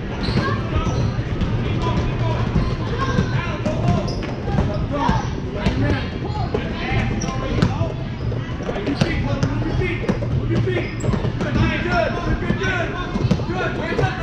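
A basketball bouncing on a gym floor in irregular thuds during a game, with many people talking and calling out at once.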